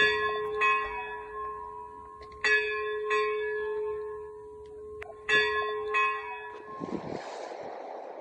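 Church bell struck in pairs of strikes about half a second apart, each pair about two and a half seconds after the last, every strike ringing on with a lingering hum. Near the end a rush of wind noise comes in.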